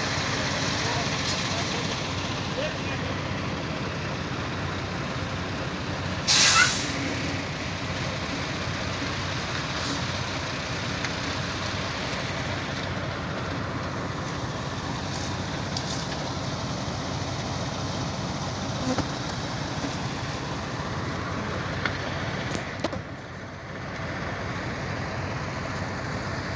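Garbage compactor truck's diesel engine running steadily, with a brief loud hiss about six seconds in.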